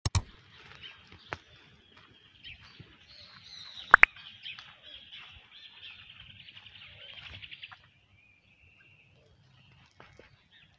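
Several birds chirping and calling, with a rapid, evenly spaced trill from about six and a half to nearly eight seconds in. Sharp knocks at the very start and about four seconds in are the loudest sounds.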